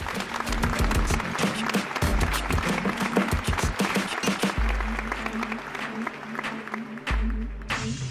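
Audience applauding, mixed with closing music that has deep bass notes. The clapping cuts off abruptly near the end, leaving the music.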